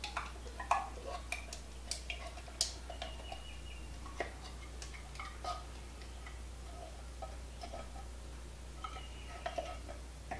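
Spatula scraping condensed cream of chicken soup out of a metal can into a glass bowl, with scattered light clicks and taps of spatula and can against the bowl, more of them in the first few seconds and again near the end.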